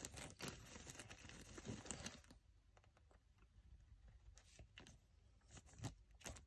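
Faint rustling and scraping of plastic chair-caster parts handled by hand for about two seconds, then near silence with a few faint clicks.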